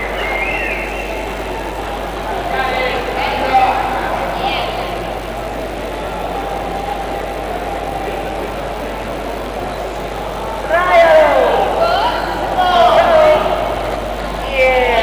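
Indoor arena crowd murmur with spectators' voices. About eleven seconds in and again around thirteen seconds, people let out loud yells and whoops with swooping pitch, the hollering that greets a reining horse's manoeuvres.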